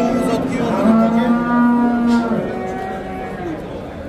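Cattle mooing in long, steady low calls. The loudest lasts about a second and a half, in the middle, and a fainter call follows and trails off near the end.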